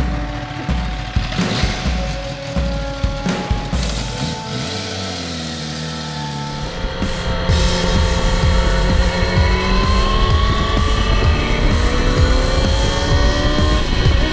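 Background music with a steady beat, then from about halfway a Kawasaki Ninja ZX-10R's inline-four engine accelerating hard, its pitch climbing steadily, under the music.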